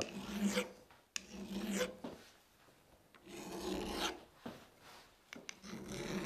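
Flat file rasping across the edge of a ball-peen hammer's steel strike face, putting a chamfer on it. There are three slow strokes about a second each with short pauses between, and another starts near the end.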